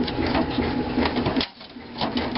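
Hands rattling and scraping cables and a drive inside a desktop computer's metal case, the clatter stopping abruptly about one and a half seconds in.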